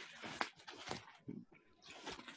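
Faint rustling and crinkling of plastic bubble wrap being handled, with a sharp click about half a second in.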